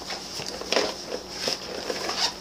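Soft rustling and a few light knocks from a fabric lunch bag being handled and opened.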